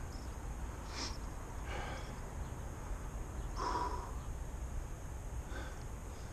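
Low steady outdoor background rumble with a few soft exhalations from the angler, the clearest a little past the middle.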